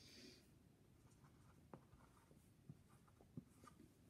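Near silence with the faint scratch of a dry-erase marker drawing on a small handheld whiteboard, with a few light ticks of the marker.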